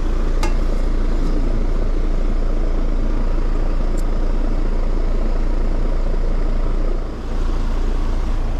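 Outdoor air-conditioning condensing unit running steadily in cooling mode: the compressor's low hum under the rush of the condenser fan, while the system is being brought up to its refrigerant charge. Two light clicks come about half a second in and at four seconds.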